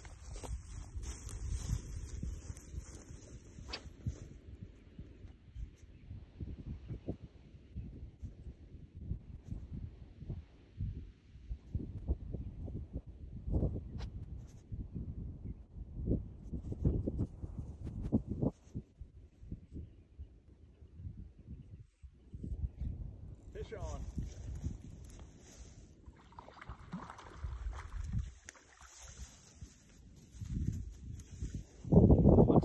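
Gusty wind rumbling on the microphone by a pond. About three-quarters of the way through, a man's voice is heard briefly.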